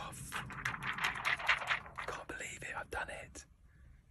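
A man whispering excitedly, breathy and without voiced pitch, for about three seconds, then quiet near the end.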